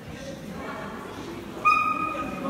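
A dog gives one short, sharp high yelp near the end, over a hall full of low voices.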